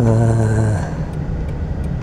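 Steady low rumble of a car's engine and tyres heard from inside the cabin while driving slowly. In the first second a man's voice holds a drawn-out, flat 'uhh'.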